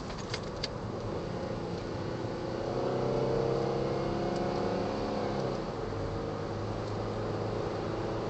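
Cabin sound of a 2010 Ford Flex's twin-turbo 3.5-litre EcoBoost V6 pulling out of a turn: the engine note rises and grows louder a few seconds in, then eases back to a steady cruise. A few sharp clicks come in the first second.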